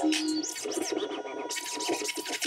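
Hip hop music being DJ-mixed, in a quieter, sparser stretch with short scratch-like strokes and a steady high tone.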